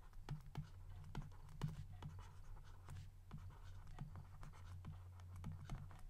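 A stylus writing by hand on a tablet: faint, irregular scratches and small ticks of the pen strokes, over a steady low hum.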